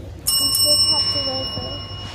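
A bell struck once, ringing bright with several high overtones and slowly fading.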